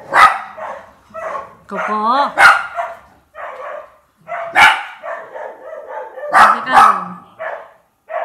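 Dog barking indoors: about five loud, sharp barks spread a second or two apart, two of them close together near the end.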